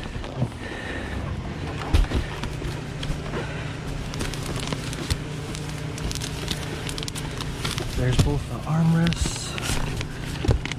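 Bubble wrap, plastic sheeting and cardboard rustling and crinkling as gloved hands dig through a gaming-chair box, with a thump about two seconds in. A steady low hum runs underneath from about two seconds in.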